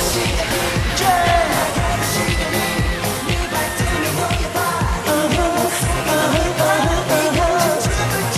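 K-pop dance track with a steady beat and singing over it.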